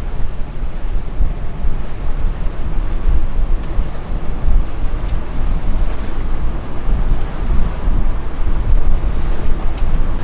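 Wind rumbling steadily on the microphone over the wash of choppy river water past a moving catamaran.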